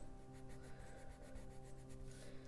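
Faint scratching of a Faber-Castell coloured pencil on paper in quick short back-and-forth strokes as small shapes are filled in.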